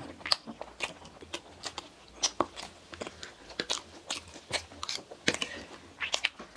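Close-miked chewing and biting of soft cream-filled donuts: irregular short mouth clicks and smacks, about three or four a second.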